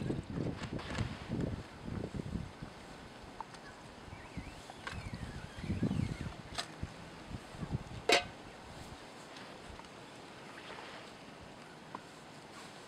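Aluminium Trangia cookware clinking as it is handled and set onto the stove, with one sharp metal clink about eight seconds in. Low wind rumbles on the microphone in the first few seconds and again around six seconds.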